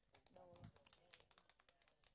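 Near silence between songs: a brief faint voice about half a second in, and scattered faint taps and clicks.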